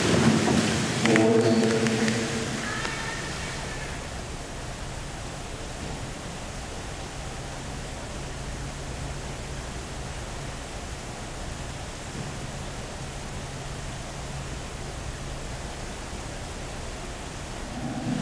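Steady, even rushing noise of an indoor pool hall's air handling, with a low hum under it. A voice echoes through the hall in the first couple of seconds.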